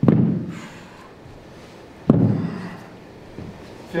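Dumbbells set down on a foam exercise mat over a wooden floor: two heavy thuds about two seconds apart, each ringing briefly in the hall.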